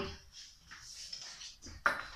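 Faint shuffling movement, then one sharp knock near the end as a child sits down on a wooden chair.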